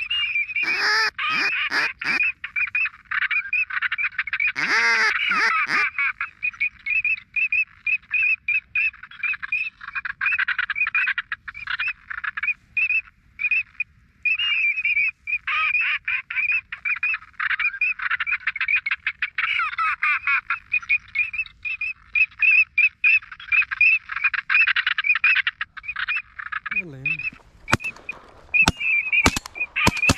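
A dense, continuous chorus of duck calls, many quick repeated calls overlapping, with a couple of louder, lower quacks about a second in and about five seconds in. A few sharp cracks come in the last two seconds.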